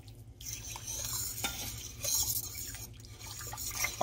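A spoon stirring liquid in a metal pot, with soft sloshing and a few faint clinks against the pot.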